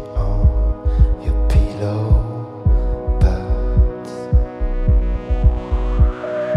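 Live electro-pop instrumental passage: a steady electronic kick-drum beat under a held synthesizer chord, with a few brief swishing noise strokes.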